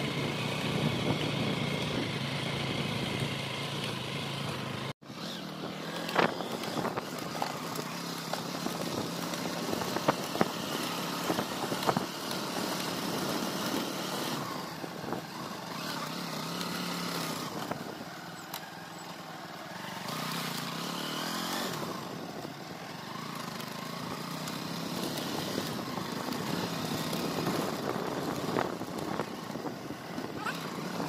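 Small motorbike engine running on a bumpy dirt-and-grass trail, its pitch rising and falling with the throttle, with occasional knocks and rattles from the rough ground. The sound cuts out for a moment about five seconds in.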